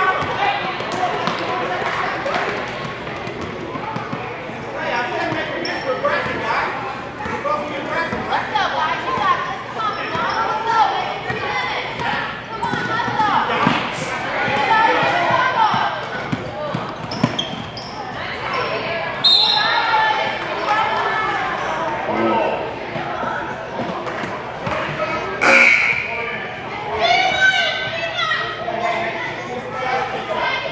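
Basketball bouncing on a hardwood gym court, with players' and spectators' voices throughout and the echo of a large gym.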